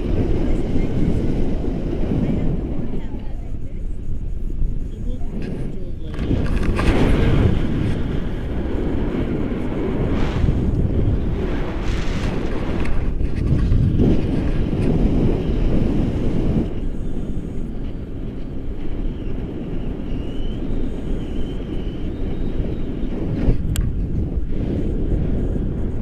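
Wind buffeting the camera microphone during a tandem paraglider flight: a loud, low rumble that surges and eases every few seconds.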